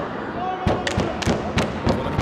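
A quick run of sharp thuds, about half a dozen in a second and a half, over crowd voices in an arena.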